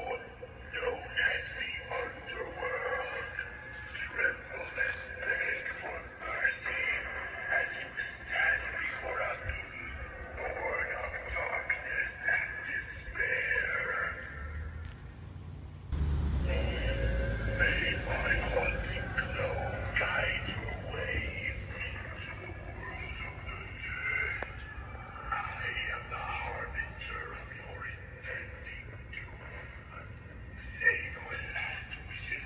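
Animatronic 12-foot levitating reaper Halloween prop speaking its recorded spooky voice lines through its built-in speaker. A low rumble joins about halfway through and fades over a few seconds.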